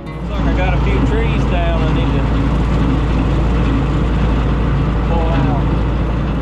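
Belarus 825 tractor's non-turbo diesel engine running steadily under load while mowing brush with a seven-foot bush hog, heard from inside the cab. A few brief higher, wavering sounds sit over it about half a second in and again about five seconds in.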